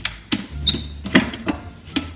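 Metal clicks and knocks of an Ariete espresso machine's portafilter being twisted loose from the group head and pulled out: about six short sharp clicks over two seconds.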